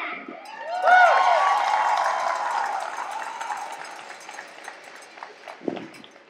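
Audience applauding, with a few cheering voices about a second in. The applause dies away gradually over the next few seconds.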